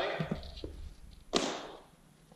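Training flails' wooden staffs knocking together as a blow is parried. A few light knocks come early, then a sharper knock about 1.4 seconds in rings out with the echo of a large hall.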